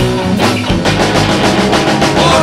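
Live rock band playing without vocals: electric guitar and bass over a drum kit, with a quick run of drum hits through the second half.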